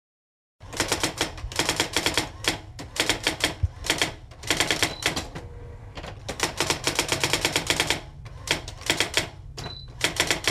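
Typewriter keys clacking in quick runs of keystrokes with short pauses between them, with a brief bell-like ding about five seconds in and again just before the end.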